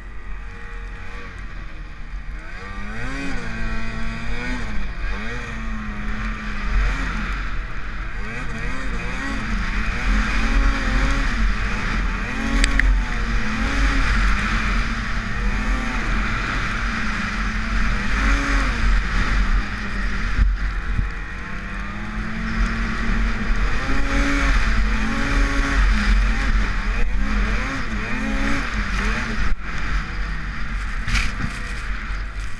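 Arctic Cat M8000 snowmobile's two-stroke twin engine revving up and down over and over as the sled is ridden through deep powder. A steady rushing hiss of snow and wind runs under the engine.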